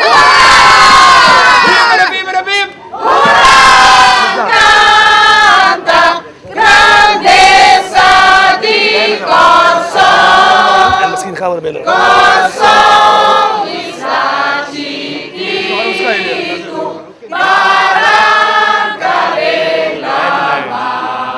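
A large crowd of people singing together, loud sung phrases with short pauses between them.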